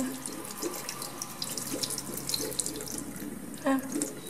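Bathroom tap running into a ceramic sink, the stream splashing over a small tortoise's shell as a toothbrush scrubs it, with short crackly scrubbing and splashing noises.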